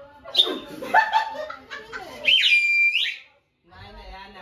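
A small toy whistle blown in one high-pitched blast of under a second, about two thirds of the way in, after a stretch of excited voices and laughter.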